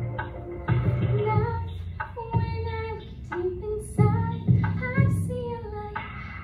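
A woman singing live into a microphone over an instrumental accompaniment, her melody gliding between held notes above low bass notes.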